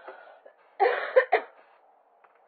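A person coughing over a telephone line: a quick run of two or three coughs about a second in.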